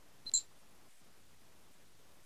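A single short, high click about a third of a second in, then near silence.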